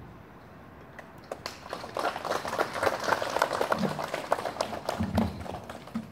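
A group of people applauding, starting about a second and a half in and dying away near the end.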